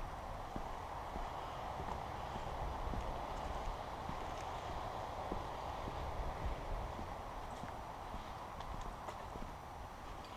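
A hiker's footsteps on wooden boardwalk planks and a leaf-littered trail: irregular knocks and scuffs over a steady rushing background.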